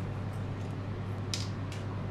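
A steady low hum in a small kitchen, with two brief soft rustles close together about a second and a half in.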